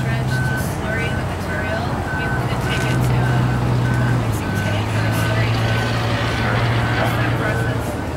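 A vehicle's reversing alarm beeping about twice a second, steady and high-pitched, over its engine running; the engine note shifts down about halfway through.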